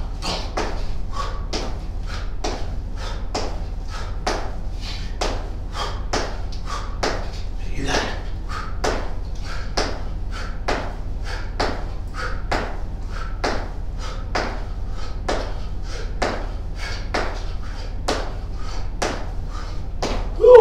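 A person doing squat jumps on a foam exercise mat: a steady rhythm of landings and hard exhaled breaths, about two a second, over a low steady hum.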